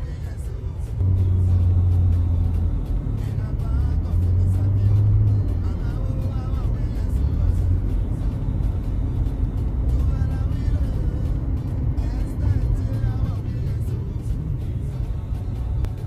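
A car driving, heard from inside the cabin as a steady low road-and-engine rumble, with music playing along with it.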